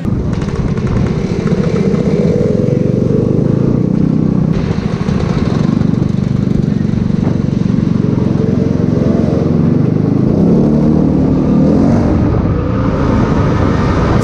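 Motor scooter engine running under way, recorded by a camera mounted on the scooter, with wind noise. The engine pitch rises and falls a few times as the throttle changes.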